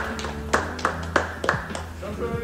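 A few scattered hand claps, about six sharp strokes unevenly spaced over two seconds.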